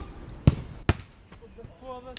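Two sharp thuds of a football being struck, about half a second and just under a second in, the first the louder.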